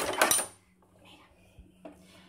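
A brief clatter of a plate and kitchen utensils being handled on a countertop in the first half second, then near quiet with two faint taps near the end.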